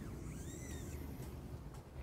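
Quiet classroom room tone with a low hum, and a few faint high squeaks in the first second, each rising and then falling in pitch.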